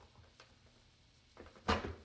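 Zebra blind's release tab being worked with a small tool: after near quiet, a faint tick and then a sharp click near the end as the blind comes free of its mounting.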